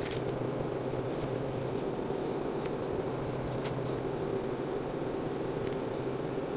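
A steady low mechanical hum of room noise, with a few faint, brief rustles.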